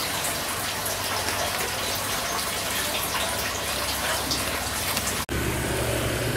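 Steady rush of running, splashing water. About five seconds in it breaks off abruptly and a steady low hum takes over.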